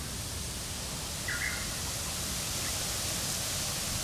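Steady outdoor hiss of ambient noise, with one short high chirp about a second and a half in.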